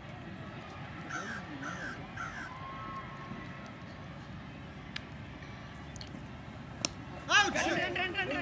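A single sharp crack of a cricket bat striking the ball, about seven seconds in, followed at once by loud shouting from the players. Earlier, three short bird calls over a faint outdoor background.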